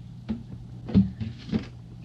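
Three short soft knocks as cooking oil is poured from a plastic jug into a glass jar of mushrooms and the jug is set down on a stone counter, over a steady low hum.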